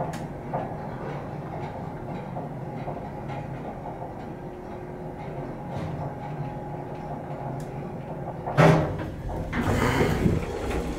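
Antique Otis traction elevator cab running with a steady low rumble and hum. A loud sharp knock comes about a second and a half before the end, followed by further knocking.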